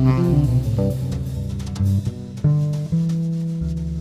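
Live small-group jazz: a saxophone line tails off just after the start, leaving electric guitar and bass playing sparse notes over light cymbals, with a long held bass note about halfway through.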